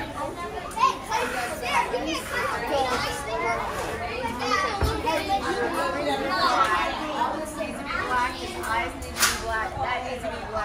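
Several children talking over one another in an indistinct chatter of young voices, with a brief sharp click near the end.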